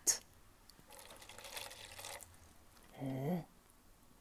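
Water poured from a small glass bottle into a potted plant's dry soil: a soft, even trickle starting about a second in and lasting about a second.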